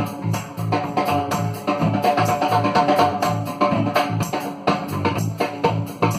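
Live rock band playing an instrumental passage: electric guitars, bass guitar and drum kit over a steady, even beat.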